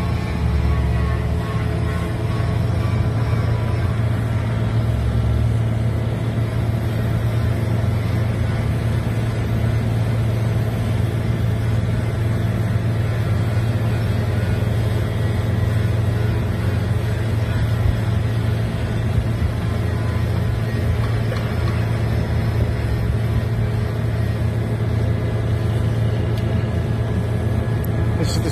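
Diesel engines of sideboom pipelayer tractors running steadily, a low drone with no let-up.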